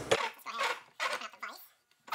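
Light, irregular clinks and knocks of a steel bolt and wooden blocks being set into the jaws of a cast-iron bench vise.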